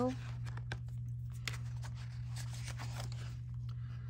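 Sheets of scrapbook paper being lifted and flipped through, with a few faint, scattered paper rustles and ticks over a steady low hum.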